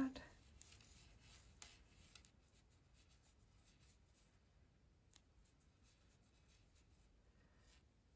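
Near silence, with faint soft rustles and a few light ticks from yarn being worked with a crochet hook.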